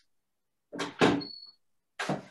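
Knocks of household handling: two quick knocks about a second in, a brief high squeak just after them, and another knock at the end.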